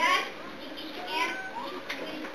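High-pitched children's voices chattering and calling out among a seated crowd, loudest right at the start.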